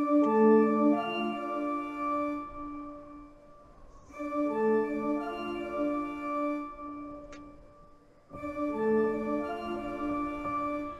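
Film teaser score music: a phrase of held chords played three times, each starting loud and fading away, the second about four seconds in and the third about eight seconds in.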